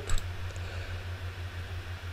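Steady low hum with faint hiss in the background, and a light click or two just after the start.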